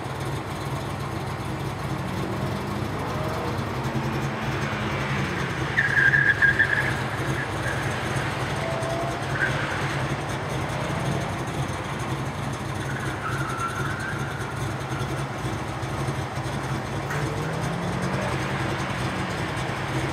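A Honda S2000 driving an autocross course through cones at a distance, its engine note rising and falling as it accelerates and slows. A brief high-pitched tyre squeal about six seconds in is the loudest moment, with fainter squeals later.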